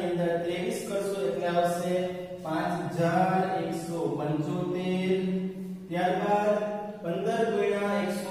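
A man's voice lecturing in Gujarati, talking steadily with long drawn-out vowels.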